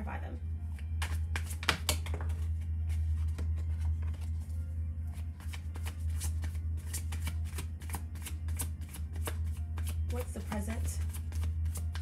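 A deck of tarot cards being shuffled by hand: a quick, irregular run of card snaps and flicks, over a steady low hum.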